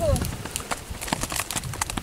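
Irregular light clicks and snaps from chili plants being handled and picked, with a voice trailing off at the very start.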